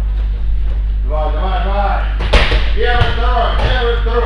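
A sharp slap-like impact about two seconds in, with a smaller knock a moment later, from students drilling wrestling technique on the mats, over voices and a steady low hum.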